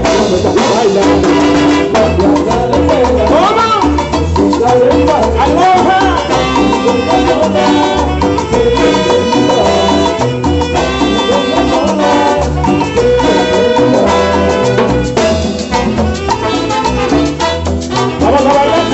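Live Latin dance band playing: a trumpet and saxophone section plays held and moving lines over a steady beat of timbales and other percussion.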